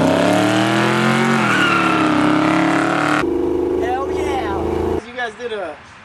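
Car engine accelerating hard, its pitch climbing and then dropping back about a second and a half in as the automatic transmission shifts up. After about three seconds it cuts to a quieter, steady engine note with voices over it.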